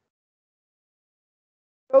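Silence, with a man's voice starting only at the very end.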